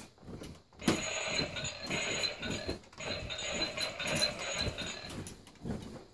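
Battery-powered toy gun firing: a rapid mechanical clatter under a steady electronic tone, starting about a second in, with a short break near the middle.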